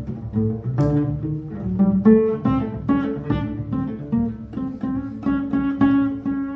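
A string quartet playing pizzicato in a jazz groove: cello and double bass plucking a rhythmic line of short, ringing notes, several a second.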